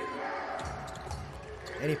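Basketball court sound during live play: ball bounces and court noise in an arena, over faint background music.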